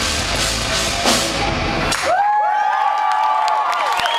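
Live rock band with electric guitars and drum kit playing loud, stopping together about halfway through at the song's end. The audience then cheers and whoops, many voices rising and falling at once.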